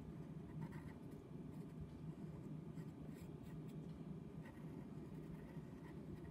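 Faint scratching of a pencil on paper in short, irregular strokes, over a low steady hum.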